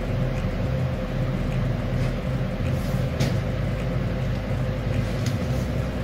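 Steady low mechanical hum with a faint steady tone riding on it, and two faint ticks about three and five seconds in.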